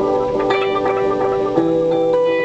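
Guitar played through a delay pedal with the feedback set high, its repeats piling up into a sustained, pulsing wash of notes. A new, lower note enters about three-quarters of the way through.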